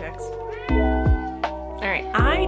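A house cat meowing, one drawn-out rising-and-falling meow near the middle, over background hip-hop music with a deep kick-drum beat.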